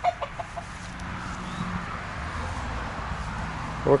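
A chicken clucking a few short times near the start, over steady outdoor background noise.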